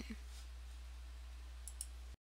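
Recording room tone: a steady low electrical hum under a faint hiss, with two faint short clicks near the end.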